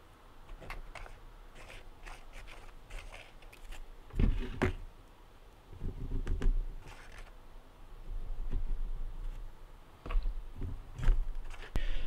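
Hands working at a cardboard-covered bench, applying two-part epoxy with a plastic wire tie and handling plastic fog-light parts: scattered light clicks and scrapes with a few dull knocks.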